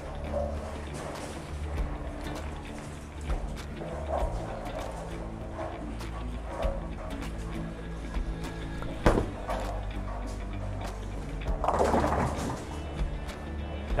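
Background music runs over bowling-alley sound. A bowling ball thuds onto the lane on release about two-thirds of the way through, and a few seconds later the pins crash, leaving a split.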